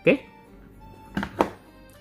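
Two short plastic knocks, about a quarter second apart, a little over a second in: a plug-in AC wattmeter being handled and taken off a power strip.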